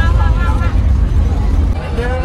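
Steady low rumble of a moving school bus heard from inside the cabin, with a voice briefly near the start.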